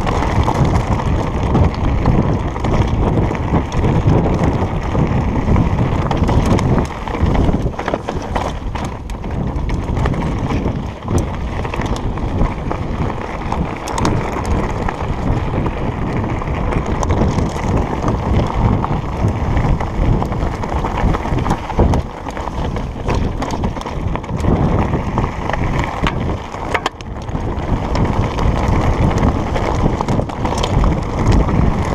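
Trek Slash 8 mountain bike rolling down rocky singletrack: tyres running over loose stones with frequent short knocks and rattles, under heavy wind noise on the microphone.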